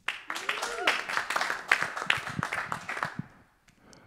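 A few people clapping, a thin scattering of hand claps that dies away after about three seconds.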